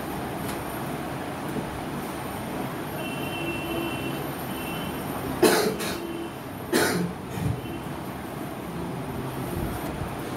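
Steady background noise of a room, with two coughs about halfway through, the second a little over a second after the first.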